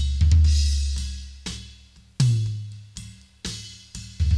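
Soloed tom-tom tracks from a studio drum recording played back through an expander: several tom hits, each with a deep ring that dies away, with a faint cymbal wash behind them.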